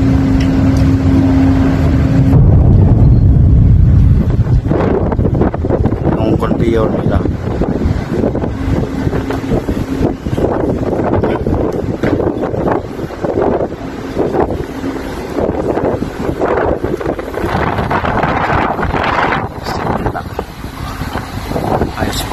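Loud, deep machinery rumble with a steady hum for the first two seconds, then gusts of wind buffeting the microphone and indistinct voices.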